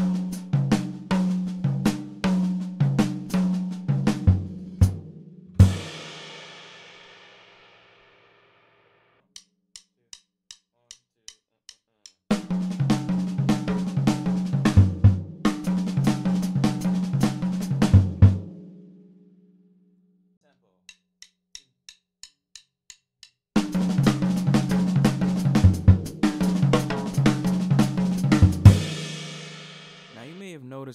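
Jazz drum kit playing a rapid single-and-double-stroke lick around the snare and toms, accented with bass-drum kicks, three times at rising tempos: 78, 140 and 180 BPM. The first and last passes end on a ringing cymbal crash. Before the second and third passes, a short run of soft even clicks counts in, faster before the last.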